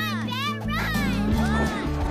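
Film score music with children's voices calling and whooping in play over it.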